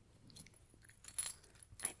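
Metal keys on a key ring clinking against each other while a small cloth bag is handled close to the microphone, with fabric rustling. The clinks come in short sharp bursts, the loudest about a second in and again near the end.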